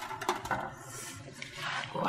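A few light metallic clinks of a wire grill basket against a metal tray in the first half-second, followed by a faint steady hiss.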